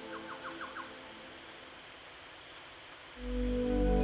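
Ambient relaxation music in a quiet lull: a steady, evenly pulsing high tone sits under a brief run of about five quick chirps at the start. About three seconds in, deep sustained music tones swell back in and grow loud.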